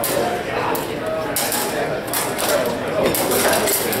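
Steel rapier and dagger blades clashing in a fast exchange between two fencers: a quick run of metallic clicks and clanks, a few at first, then coming thick and fast from about a second and a half in until near the end.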